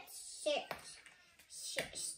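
A young child's voice saying two short words, each beginning with a hiss.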